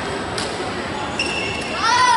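Badminton rally: a sharp crack of a racket hitting the shuttlecock about half a second in, then high squeaks of shoes on the court floor near the end. Voices and the echoing noise of a busy sports hall run underneath.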